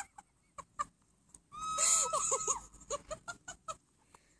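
A woman's high-pitched, wheezing, cackling laughter in short gasping bursts, with a longer run of squealing laughs about halfway through.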